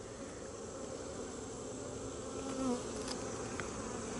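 Honeybees buzzing in a steady hum over an opened hive, with one bee's buzz standing out briefly as it passes close a little past halfway. The bees are a little antsy at having the hive opened.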